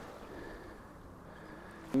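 Faint, steady outdoor background noise with no distinct sound event in it, and a small click just before the end.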